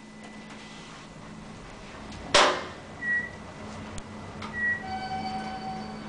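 Inside a running 1983 Otis traction elevator car: a steady low hum, a single sharp clunk about two and a half seconds in, then two short high beeps, and a held chime-like tone near the end as the car arrives at a floor.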